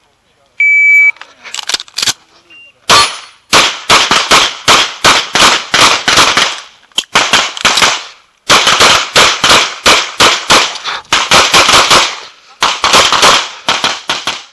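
An electronic shot-timer beep, about half a second long, gives the start signal, and then a pistol fires rapid strings of shots at competition pace, broken by short pauses for movement or reloading between positions.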